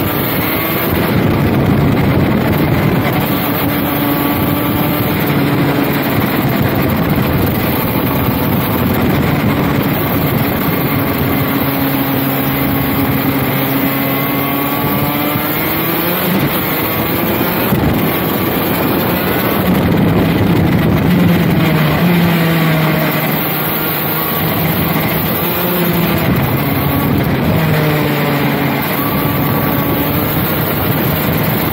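KZ shifter kart's 125 cc two-stroke engine at racing speed, its pitch repeatedly climbing under throttle and dropping in steps through gear changes and braking.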